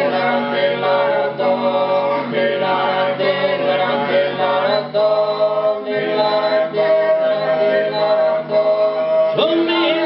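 Sardinian four-part male polyphonic singing (cuncordu), a cappella, with long held chords over a low sustained bass voice; the chord shifts about halfway through and again near the end.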